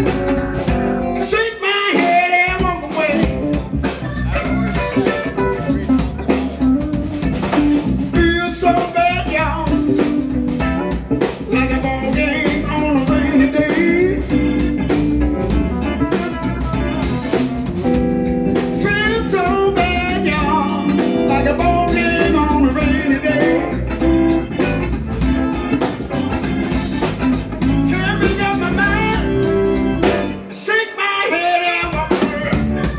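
Live blues band playing an instrumental break: two electric guitars, electric bass, drum kit and keyboard. A lead line of bending, sliding notes rides over the rhythm section.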